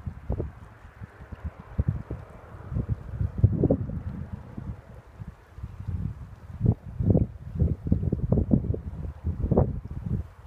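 Wind buffeting the phone's microphone in irregular gusts, over a faint steady rush of a shallow river.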